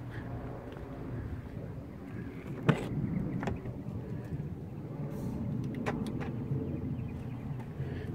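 Driver's door of a 2008 Ford Expedition being opened: a sharp latch click about two and a half seconds in, a second click shortly after, and a few fainter clicks later, over a low steady rumble.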